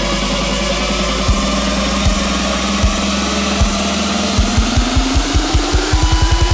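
Hardstyle track in a build-up: sustained synth chords with single kick-drum hits a little under a second apart. From about four seconds in, the kicks quicken into a fast roll under a synth tone that rises in pitch, building towards the drop.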